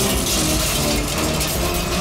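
A steady, loud explosion rumble with crumbling, clattering debris, as a sound effect for an animated city blast, mixed with dramatic background music.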